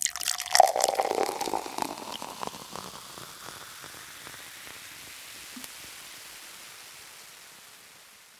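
Sparkle sound effect for the lens-flare logo reveal: a burst of crackling, glittering ticks that thins into a soft hiss and fades out.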